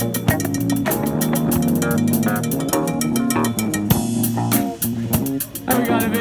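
Live fusion jam band playing, with a prominent electric bass line under electric guitar and keyboard and a fast, even ticking percussion pattern. The music thins out briefly about four and a half seconds in, then comes back in with a bending melodic line on top.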